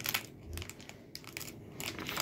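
Faint, intermittent crinkling and rustling of toy packaging being handled, the rustle coming and going in short bursts.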